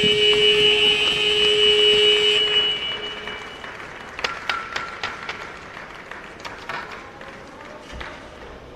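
Arena horn sounding as the game clock runs out at the end of a period, one steady held tone that stops about two and a half seconds in. Crowd noise and scattered sharp knocks follow.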